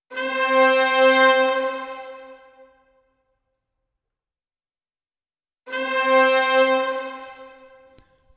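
Sampled orchestral brass ensemble (Spitfire Audio Originals Epic Brass, long articulation) playing the same held note twice: once at the start and again about five and a half seconds in. Each note swells and then fades away over two to three seconds, with the release shortened and the built-in reverb at half.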